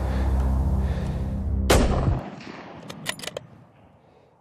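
A single rifle shot about two seconds in, cutting across background music with low sustained tones that stops just after it. A few sharp clicks follow about a second later.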